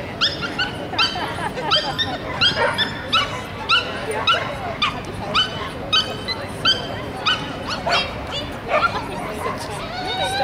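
A small dog barking repeatedly in high-pitched yaps, about two a second.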